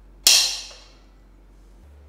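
A spring-loaded automatic centre punch snapping once against a steel frame tube: a single sharp metallic click with a short ring that dies away within about half a second. It marks the spot for drilling.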